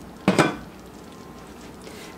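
A single short clank of a metal utensil against cookware, about a third of a second in, over low room noise.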